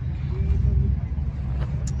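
Steady low rumble of a running motor-vehicle engine, with a short click near the end.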